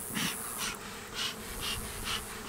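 Bellows smoker puffed over an open beehive: about four short breathy puffs, roughly two a second, over the steady buzzing of the honeybees in the hive.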